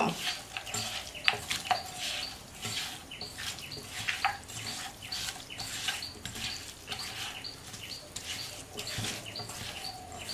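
A hand mixing raw chicken pieces with spices in a non-stick pot: irregular soft wet squishes and light knocks of the meat against the pot, a few each second.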